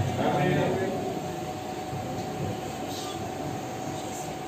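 A man's voice briefly at the start, then steady background noise with a faint, steady hum running under it.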